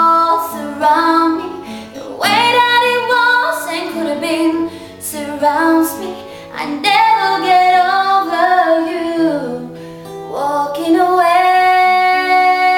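A woman singing a slow ballad, accompanying herself on an acoustic guitar. Her sung phrases come in with held notes, over steady guitar chords.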